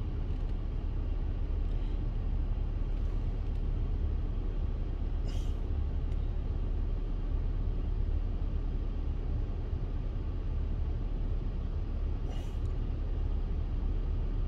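Steady low rumble of a car idling, heard from inside the cabin, with two faint brief sounds partway through.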